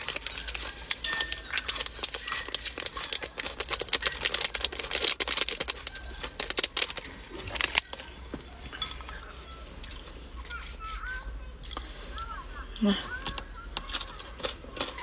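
A small plastic seasoning packet of chili salt crinkling and crackling as it is torn open and handled, a quick run of sharp crackles for about the first eight seconds, then only sparse light rustles.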